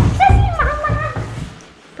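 A small dog whining: one high, wavering whine lasting about a second, just after a short knock at the start.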